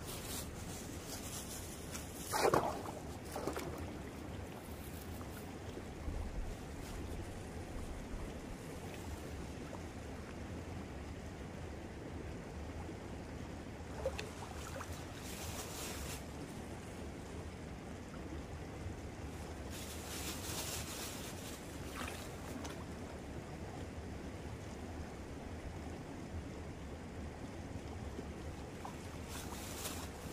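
Water of a small shallow river running, with a low wind rumble on the microphone and a few short bouts of splashing from someone wading in it. A brief sound falling steeply in pitch comes about two and a half seconds in and is the loudest moment.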